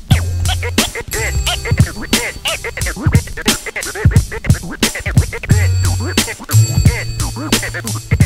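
Hip-hop intro beat with turntable scratching: sharp drum hits and a deep bass line under short scratches that glide up and down in pitch.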